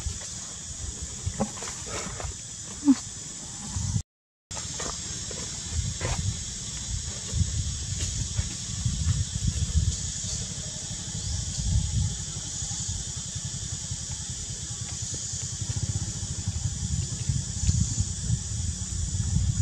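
Outdoor ambience: a steady high insect drone over a low, uneven rumble, with a few faint soft clicks in the first few seconds. The sound cuts out briefly about four seconds in.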